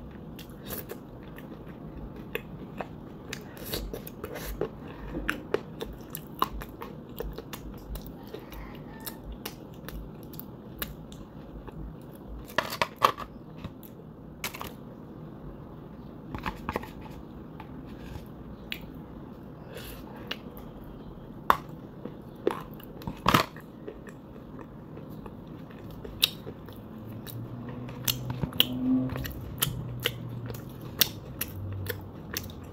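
Close-miked biting and chewing of dry white edible clay: scattered crisp crunches and clicks, with a few louder bites standing out.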